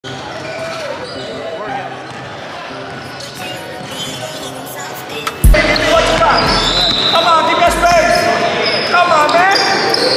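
A basketball bouncing and being dribbled on a gym's hardwood floor during a game, with players' voices echoing in the hall. The sound gets suddenly louder about halfway through.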